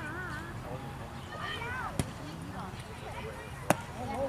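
Baseball smacking into the catcher's mitt near the end, a single sharp pop, after a fainter click about halfway through. Voices calling out from the field or sideline run underneath.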